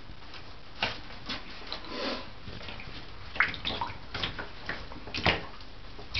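Ferrets paddling in shallow bathtub water: small, irregular splashes and sloshes, about one every second, over a steady faint hiss.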